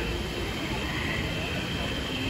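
Steady outdoor din of water cascading down the volcano's rock waterfalls, mixed with street traffic and crowd chatter.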